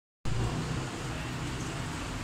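Steady background noise, a low rumble with hiss, cutting in just after the start.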